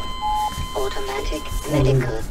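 A short, steady electronic beep, followed by men's voices talking quietly.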